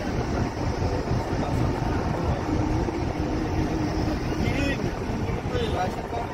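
Wind and road noise from a moving car heard through its open side window: a steady rumble and rush. A faint held tone comes in the middle, and short high chirps come near the end.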